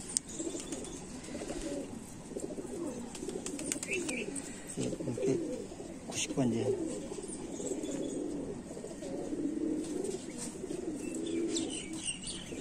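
Domestic pigeons in a loft cooing continuously, a low wavering murmur of many birds, with a few higher chirps.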